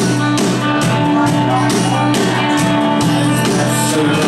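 Live rock band playing an instrumental stretch of a song: guitar over a steady drum beat, amplified through a club PA.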